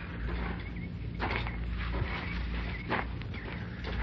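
Sound effects in a pause of an old radio drama recording: a low steady hum under a faint hiss, with two soft brief scuffs about a second and three seconds in.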